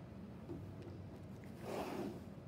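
A picture-book page being turned by hand: a short paper swish near the end.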